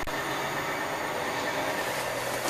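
Steady running noise inside the cab of a 2004 Peterbilt 379: an even low hum under a hiss, with a short click right at the start.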